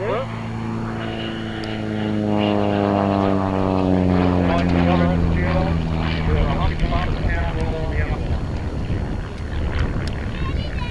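Van's RV-4 aerobatic plane flying past. Its single piston engine and propeller make a steady drone that swells to its loudest around the middle and slides slowly down in pitch as the plane goes by.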